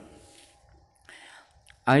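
A pause in a man's speech: his voice trails off, then a short soft in-breath about a second in and a faint click before he starts speaking again near the end.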